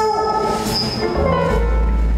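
Big band playing live, heard from the audience: held chords over a deep bass note.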